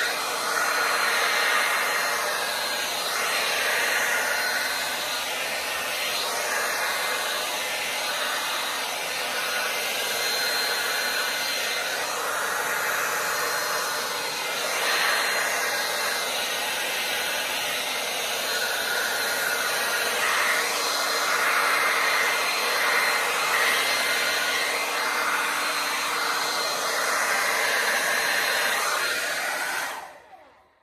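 Handheld hair dryer running steadily, blowing wet fluid acrylic paint across a canvas in a Dutch pour. Its sound swells and dips a little as it is moved, and it is switched off at the end.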